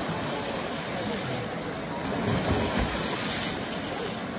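Steady rushing of river water at a weir.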